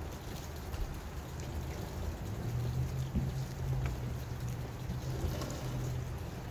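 Steady outdoor background hiss with a few faint clicks, joined about two seconds in by a low steady hum.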